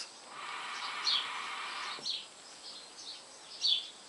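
A pull on a Mini Mya acrylic hookah: a steady bubbling hiss of air drawn through the water in the base, through a Nammor diffuser, lasting about two seconds before stopping. Birds chirp briefly several times in the background.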